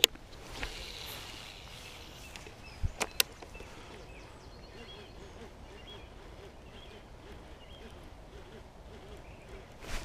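A baitcasting rod and reel being cast: a sharp click at the start, then a brief swish as the line goes out. Two or three sharp clicks and knocks follow about three seconds in, and after that only faint sounds during the retrieve.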